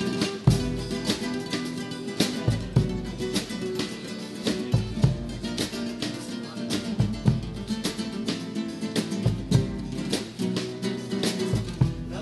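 A carnival group's acoustic guitars strumming a lively tune, with drum strikes beating the rhythm and occasional heavy low drum hits.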